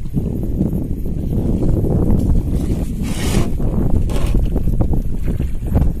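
Wet fishing net being hauled over a boat's side, water splashing and streaming off it, under heavy wind rumble on the microphone. Two louder splashes come about three and four seconds in.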